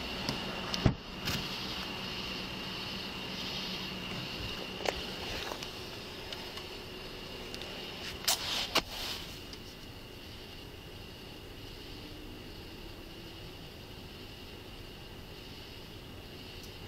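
Steady running noise inside a car, with a faint steady high whine. A few knocks and clicks come through, the loudest a little under a second in and a cluster around eight to nine seconds in.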